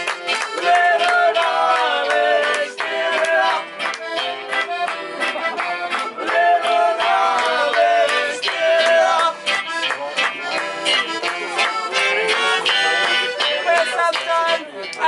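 Live acoustic band playing an instrumental passage: a piano accordion carries the melody over acoustic guitar and upright bass, with a steady rhythmic beat.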